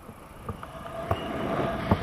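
Airflow rushing over a pole-mounted action camera's microphone in flight under a tandem paraglider, growing louder about half a second in, with a few sharp, irregular knocks.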